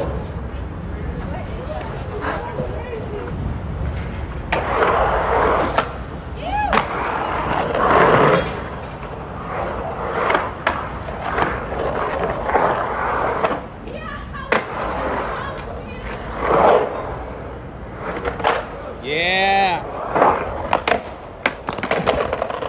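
Skateboard polyurethane wheels rolling over a concrete bowl, a steady rumble broken by several sharp clacks and knocks of the board.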